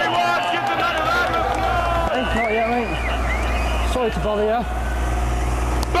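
A motor vehicle's engine running close by, a steady low rumble that starts about a second in, under men's shouting voices.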